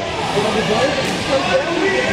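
Voices shouting and talking in a large hall, coaches and spectators calling out during a jiu-jitsu match, over a background of crowd chatter.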